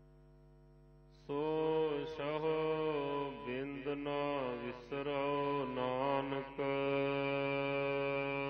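Gurbani verses of the Hukamnama chanted by a voice over a steady drone. Only the quiet drone sounds at first, and the voice comes in loudly about a second in, gliding between held notes.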